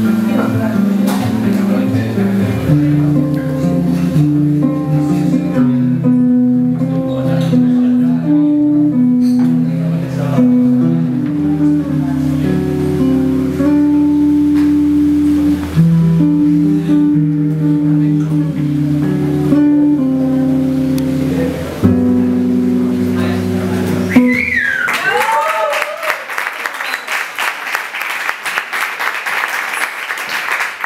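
Electric bass played alone, a melodic line with sustained notes and chords, until it stops about 24 seconds in. The audience then bursts into applause and cheering.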